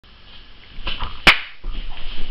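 Rustling and handling noise from a person moving right up against the camera, with one sharp snap or knock about a second and a quarter in.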